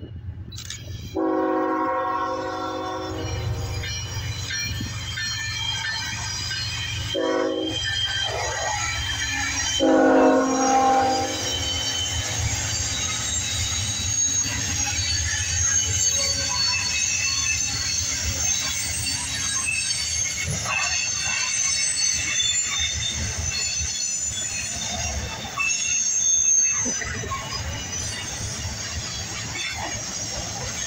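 Union Pacific freight locomotive's horn sounding three blasts in the first dozen seconds: a long one, a short one, then another long one. After that the freight cars roll past with a steady rumble and high wheel squeal.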